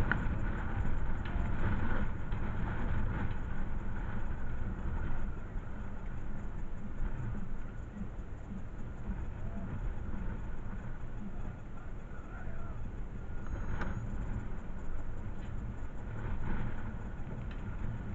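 Wind buffeting the microphone: a low, gusty rumble that swells and eases.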